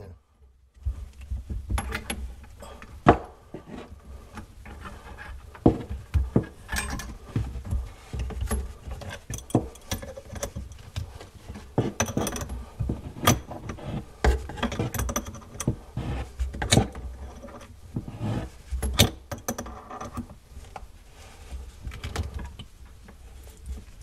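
Metal adjustable wrenches clicking and clinking against the nut of a flexible faucet supply line and its shut-off valve as the nut is tightened, one wrench holding the valve as a backup while the other turns. Scattered, irregular metallic clicks and knocks.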